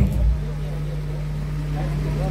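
A steady low hum, with a brief low thump at the very start.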